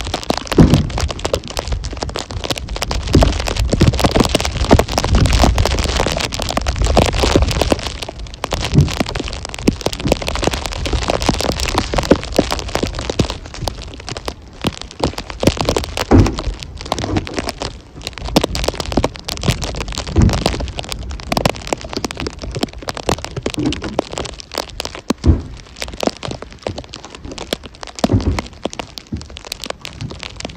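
Wind on the microphone, with heavy rumble in the first eight seconds and steady crackling throughout. Several separate dull thuds come later as firewood rounds are set down in a pickup's bed.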